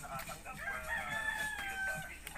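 A rooster crowing once, ending in a long held note that falls slightly in pitch.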